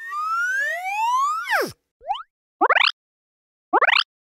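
Cartoon-style sound effects: a spread of rising whistling glides for about a second and a half, ending in a quick falling swoop, then three short rising chirps with silent gaps between them, the last one near the end.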